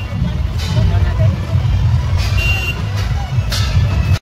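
Loud street procession din, dominated by a deep, rumbling low booming, with voices mixed in and a short high beep about two and a half seconds in.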